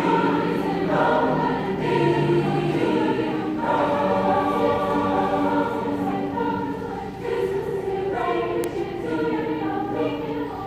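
A choir singing, holding sustained chords that change every second or so.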